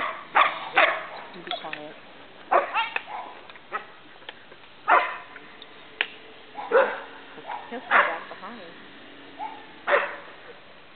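A dog barking in short, single barks spaced a second or two apart while it works a small group of sheep.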